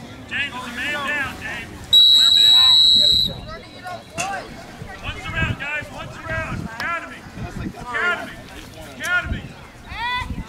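A referee's whistle blown once, a steady shrill blast of about a second and a half starting about two seconds in. Distant shouting voices from the field go on throughout.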